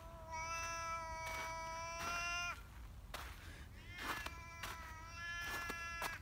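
Black domestic cat giving two long, drawn-out yowls, the first held about two seconds and the second near the end. It is an unfriendly cat warning off a person who is approaching.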